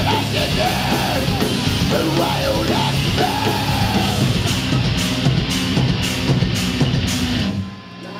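Hardcore band playing live at full volume: distorted guitars, bass and drums with yelled vocals, cymbals crashing in the last few seconds. The band stops abruptly about seven and a half seconds in, leaving a low note ringing.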